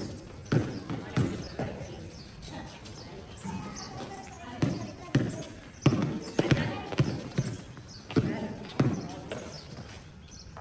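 Basketball bouncing on a concrete court: about a dozen thumps in irregular runs, a few close together near the start and a longer run in the second half, with voices.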